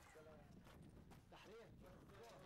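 Faint voices of people talking, with scattered light clicks and knocks.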